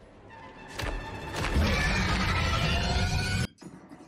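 Film soundtrack: a swell that rises and is marked by two sharp clicks about a second in, then loud music that cuts off abruptly shortly before the end.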